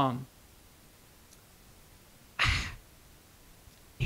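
A single short breath or sigh close to the microphone about two and a half seconds in, a brief puff of air that fades quickly, in a pause in the talk.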